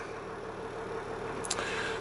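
Land Rover Discovery's 3.0-litre SDV6 diesel V6 idling steadily, heard from inside the cabin, with a single short click about one and a half seconds in.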